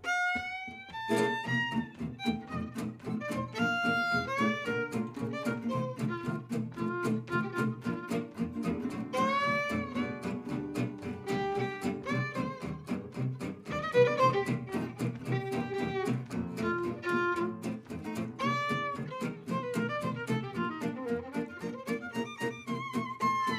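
Gypsy jazz (jazz manouche) quartet playing an instrumental passage: a bowed violin carries the melody with slides and vibrato over the steady strummed chords of two acoustic rhythm guitars and a plucked double bass.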